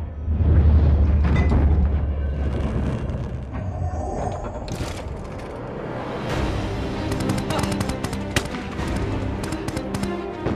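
Film battle soundtrack: dramatic music mixed with explosion booms and gunfire. A heavy low rumble fills the first few seconds, and rapid sharp shots and impacts follow in the second half.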